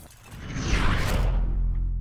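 Logo sting sound effect: a swelling whoosh that peaks into a deep low hit under a second in, the low rumble ringing on and slowly fading.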